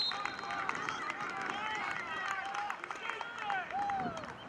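Indistinct voices of players and spectators calling and shouting around an outdoor football field, many short calls overlapping, with a few short sharp clicks.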